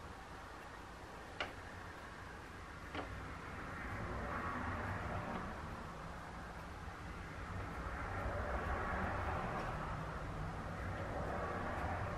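Felt-tip marker scratching faintly on paper as short curved strokes are drawn, with two light clicks in the first few seconds, over a low steady hum.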